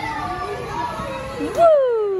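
A high voice making drawn-out vocal sounds. About a second and a half in comes a loud exclamation that leaps up in pitch and then slides slowly down.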